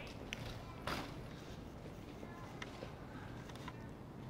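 Quiet outdoor background noise with a few faint, scattered clicks.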